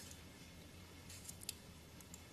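Near silence: room tone with a faint low hum and a couple of faint short clicks about midway.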